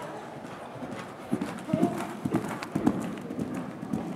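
A grey horse's hoofbeats as it canters on the sand footing of the arena: a run of dull thuds that starts about a second in.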